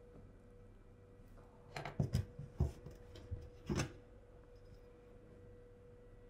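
Four or five short, soft knocks and rubs between about two and four seconds in, from paper pattern pieces and a metal ruler being handled and set down on fabric on a cutting table.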